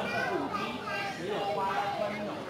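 Several human voices talking over one another.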